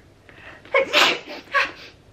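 A woman sneezing once: a short breathy lead-in, then a sharp sneeze about a second in, with a small vocal sound just after.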